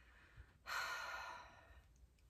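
A woman's soft breathy sigh, a single exhale about a second long that starts sharply and tapers off.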